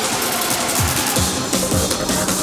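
Hardcore electronic music from a DJ mix: a steady beat of heavy kick drums that drop in pitch, under a dense, harsh noisy layer.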